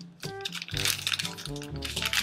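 Light background music with short plinking notes, over the small crackles of a thin plastic wrapper on a toy surprise ball being peeled open by hand.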